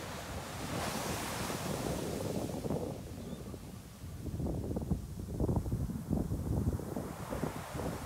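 Ocean surf washing as a steady hiss, then from about halfway, irregular gusts of wind buffeting the microphone and rumbling over it.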